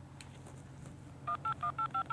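Touch-tone telephone keypad being dialed: after a quiet second, a rapid run of short two-note beeps, about six a second, one per key press.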